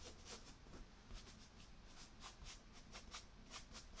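Faint, irregular scratchy strokes of chalk being worked across pastel paper, about three or four a second.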